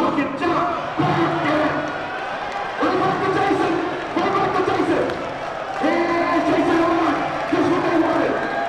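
Indistinct voices and music over the crowd noise of a large gymnasium, with held tones about a second long recurring throughout.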